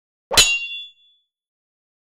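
A single sharp metallic clang about a third of a second in, with a short high ringing tail that dies away within about half a second.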